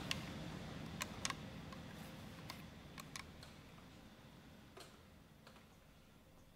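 Scattered small clicks and taps from musicians handling their instruments and gear, about eight at irregular intervals, over a low room hum that fades toward near silence.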